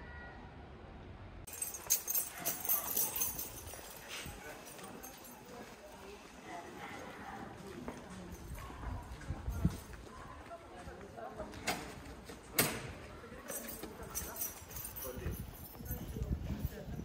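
Street ambience: indistinct voices of passers-by and hard steps on the stone paving, with a few sharp clicks standing out.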